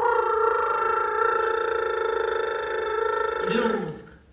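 A steady high-pitched note held for nearly four seconds. It starts suddenly and cuts off just before the end, with a brief low voice sound under it near the end.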